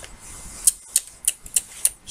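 A handful of light clicks, spaced about a third of a second apart, starting just over half a second in.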